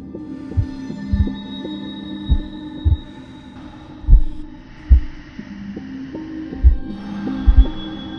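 Dramatic film soundtrack: heavy low heartbeat-like thumps, roughly one a second at uneven spacing, over a sustained droning chord.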